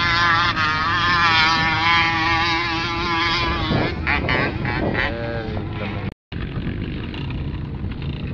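A vehicle engine revving hard under load, its pitch wavering, during dune driving on sand. Near the middle the revs fall away, and the sound cuts out briefly just after six seconds.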